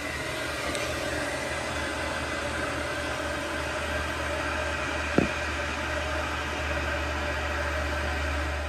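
Weil-McLain Ultra 3 gas condensing boiler firing steadily, its combustion blower and burner making a constant hum and rush. A single sharp click about five seconds in.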